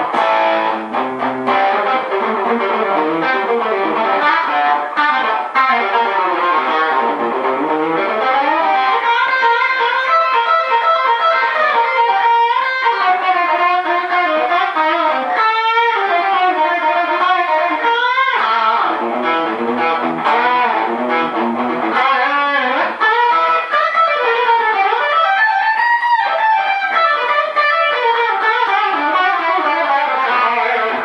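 Gibson '57 Les Paul Junior reissue electric guitar with a Seymour Duncan '78 Model pickup, played through a Fender Deluxe Reverb amp with a touch of compression and overdrive. The guitar plays continuous lead phrases, with notes bent and wavering at several points.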